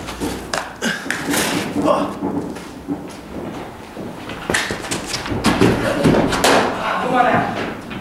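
Indistinct voices talking in an indoor cricket net hall, with several sharp knocks and thuds among them.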